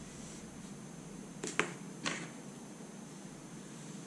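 Three sharp plastic clicks from felt-tip pens being handled while switching pens: two close together about one and a half seconds in, then one more half a second later, over faint room hiss.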